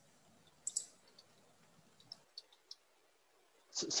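About six faint, sharp clicks in the first three seconds over a quiet call line, the first the loudest. A voice begins just at the end.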